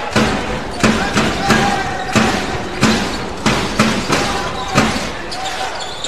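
Basketball dribbled on a hardwood court, bouncing at a steady rhythm of about three bounces every two seconds, over the background noise of the arena.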